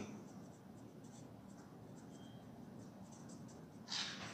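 Faint scratching of a felt-tip marker writing on chart paper, a run of short strokes.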